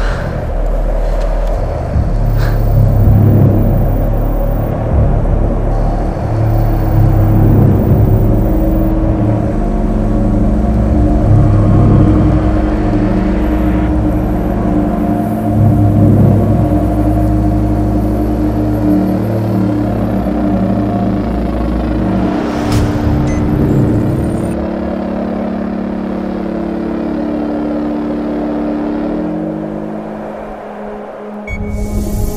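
Film sound mix of a giant tracked machine moving: a deep, continuous rumble under a music score with held tones, and a sharp hit about three-quarters of the way in. Near the end the rumble drops away and the held music tones remain.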